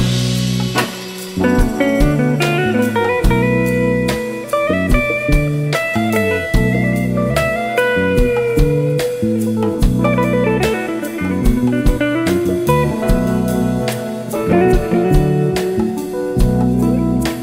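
Instrumental band playing live: a hollow-body electric guitar carries the melodic line over electric bass, keys and a drum kit keeping a steady beat.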